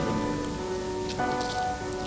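Background music of soft held tones over a steady rain-like hiss.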